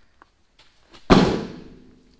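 A cardboard crate set down hard on top of a metal tool cart: one sharp thump about a second in, with a short ringing tail.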